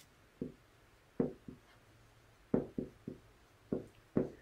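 A dry-erase marker writing on a whiteboard: a string of short, separate strokes and taps as a word is written out.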